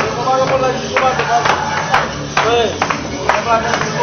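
Several men's voices talking and calling out together in a room, with a few sharp hand claps among them.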